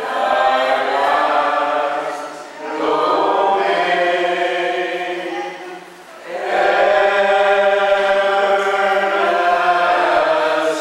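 Congregation singing a hymn or chant together, in long sustained phrases broken by short pauses for breath about two and a half and six seconds in.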